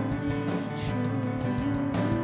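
Live worship band music: keyboard and acoustic guitar playing held chords.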